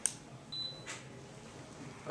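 Camera shutter clicks, two sharp ones about a second apart, with a short high electronic beep between them.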